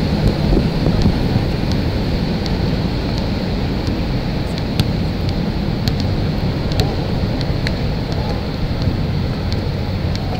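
Wind buffeting the microphone, a heavy steady low rumble, with a scattering of short sharp knocks from the basketball game on the outdoor court.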